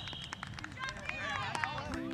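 High voices or calls mixed with scattered sharp taps, with a brief steady high tone at the very start.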